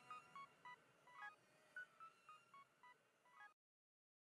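Faint tail of a synthesizer melody of short beeping notes, fading out and cutting off to silence about three and a half seconds in.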